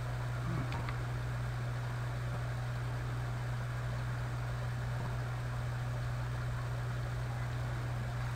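Steady low hum with an even hiss beneath it, unchanging throughout: background noise of the recording setup.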